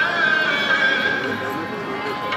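Sikh devotional hymn singing (kirtan) with music, a voice holding long wavering notes, over people talking.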